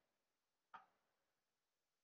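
Near silence, with one faint, short click about three-quarters of a second in.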